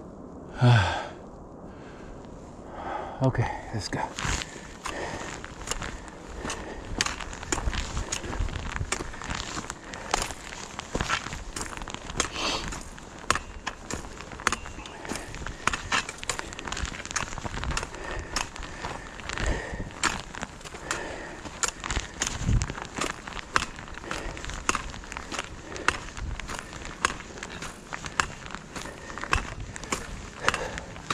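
A hiker's footsteps crunching on a rocky, gravelly trail, with the trekking-pole tips clicking on the rock in an uneven walking rhythm that starts about four seconds in. Heavy breathing and sighs from the climb come before the walking starts.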